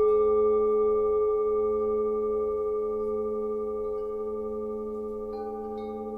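Tibetan gong music: a struck metal gong ringing on in several steady tones and slowly fading, with a lighter strike adding higher tones about five seconds in.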